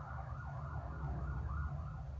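Distant emergency-vehicle siren, faint, its pitch sweeping up and down about three or four times a second over a steady low hum.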